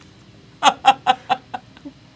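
A woman laughing in a run of short, rhythmic bursts, about four or five a second, starting about half a second in and tailing off.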